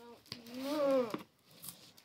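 A drawn-out wordless voice sound, rising then falling in pitch, lasting under a second, over faint scraping of a utility knife slicing packing tape along a cardboard box seam.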